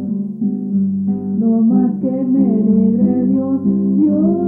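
Hispanic folk song music with guitar accompaniment under a melody that moves in held notes, stepping from pitch to pitch.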